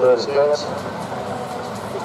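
A person's voice speaking briefly, then a steady rushing background noise.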